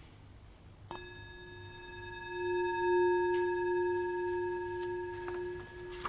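A Tibetan singing bowl struck once about a second in and left to ring: one deep steady tone with several higher overtones, swelling slightly and then slowly fading.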